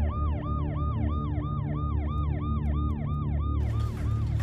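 Electronic emergency-vehicle siren in a fast yelp, its pitch sweeping up and down about three times a second over a low steady hum; the sweeps fade out near the end.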